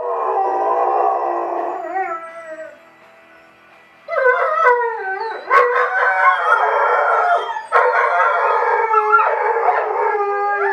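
German shorthaired pointers howling along to harmonica music, their pitches wavering and overlapping. The howling breaks off for about a second midway, then starts again louder with more than one voice.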